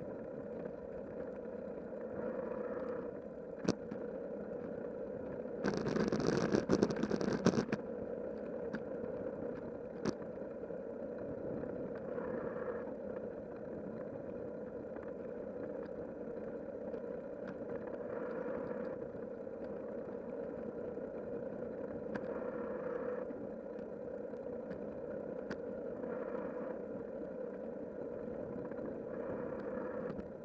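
Bicycle riding noise on an asphalt path, picked up by a camera mounted on the bike: a steady hum of rolling tyres and wind. About six seconds in, a louder rattling stretch lasts about two seconds, and a few sharp ticks stand out.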